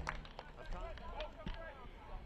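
Field sound of a soccer match: faint, distant voices of players calling out over a low rumble, with a single knock about a second and a half in.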